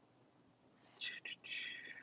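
Near silence, then about a second in a woman whispers or mutters faintly to herself for about a second.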